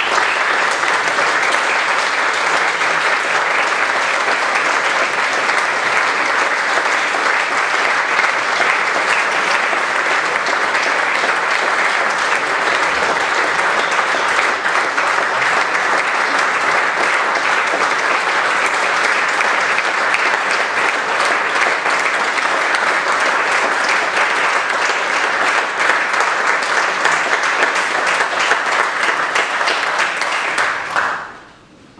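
Audience applauding steadily and at length, a dense even clapping.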